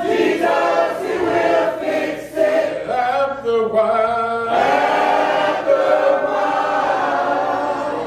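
Church congregation singing a hymn together a cappella, many voices holding long sustained notes.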